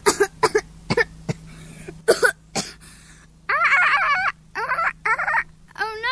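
Vocal imitation of a dolphin with a broken voice: a few short coughing, croaking sounds, then wobbling, warbling squeaks from about three and a half seconds in.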